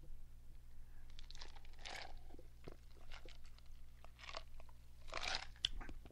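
Faint, intermittent mouth sounds of a person drinking close to the microphone, with small clicks and swallows, over a low steady electrical hum.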